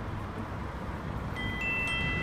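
Steady low rumble of city street traffic, with clear bell-like chime tones starting one after another about one and a half seconds in and ringing on together.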